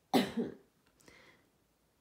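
A woman coughs: a short double cough right at the start, followed by a fainter breath about a second later.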